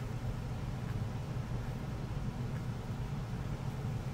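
Steady low hum with a faint even hiss: background room noise picked up by the narration microphone.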